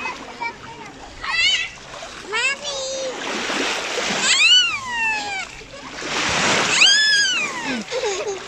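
Children's high-pitched squeals and calls, several rising-and-falling cries, over water splashing in the shallows.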